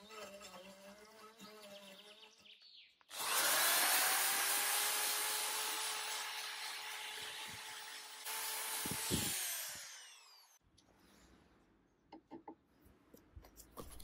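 A handheld rotary tool with a brush wheel spins up suddenly and scrubs against carved wood, a loud steady whine with scratchy noise. Its pitch falls as it is switched off and winds down. Before it starts, a faint whine of a small rotary tool is heard.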